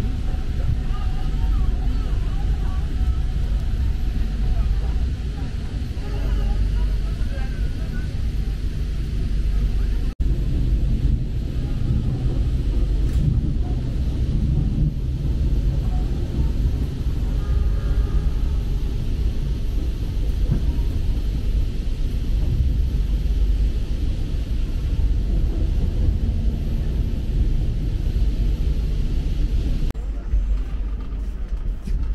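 Steady low rumble of a moving passenger train heard from inside an executive-class coach, with faint passenger voices over it. The sound cuts out for an instant about ten seconds in.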